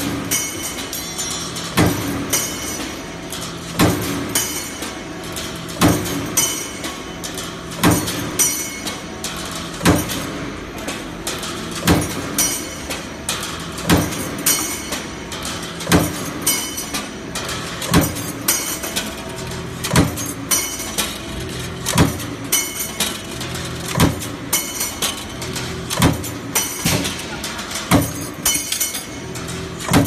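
Mechanical punch press stamping metal strip through a single cutting die, striking heavily about every two seconds with a lighter clank between strikes, over a steady machine hum.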